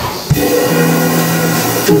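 A live small jazz band with double bass and drum kit starts playing about a third of a second in, after a moment of room noise. The band holds steady notes that change near the end.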